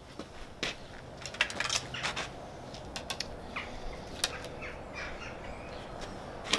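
Faint scattered clicks, taps and rustles of an archer handling an arrow at a traditional bow while readying a shot.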